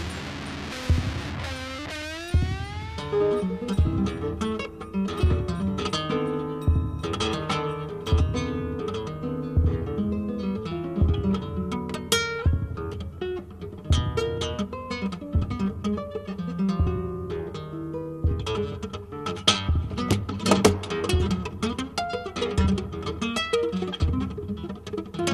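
A live folk-rock band plays an instrumental passage, with guitar over bass and a steady beat. A pitched note sweeps upward about two seconds in.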